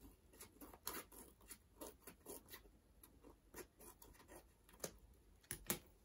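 Scissors trimming excess paper along the edge of a notebook cover: faint, repeated snips, about two or three a second.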